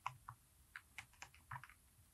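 Faint typing on a computer keyboard: about nine keystrokes at an uneven pace, stopping shortly before the end.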